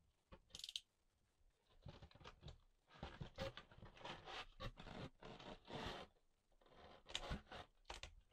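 Cardboard shipping box being handled and opened: faint, irregular scraping and tearing of cardboard and packing tape, one brief scrape early and then a quick run of strokes from about two seconds in.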